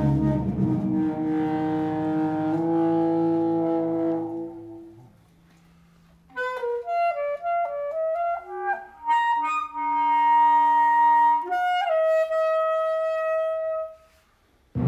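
A sustained ensemble chord fades away about five seconds in. After a short pause, an alto saxophone plays a slow line of held notes that step up and down, with a quieter low note sounding under part of it.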